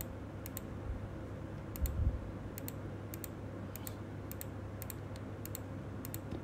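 Computer mouse clicking, a string of sharp clicks that mostly come in quick pairs, spread over a few seconds, as checkboxes are ticked and unticked. A faint steady low hum lies underneath, with one dull thump about two seconds in.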